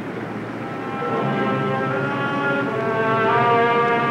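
Background score music: held chords that build as new notes enter one after another, growing gradually louder.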